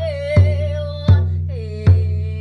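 Elk-hide frame drum struck with a padded beater in a steady beat, three strokes about three-quarters of a second apart, each leaving a deep ringing tone. Over it a woman sings a wordless cry: one held note that breaks off, then a lower note begins shortly after.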